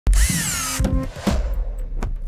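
Logo sting built on a power-drill sound effect: a short, loud drill whir that rises and then falls in pitch, cut off under the first of a run of sharp electronic music hits, about two a second.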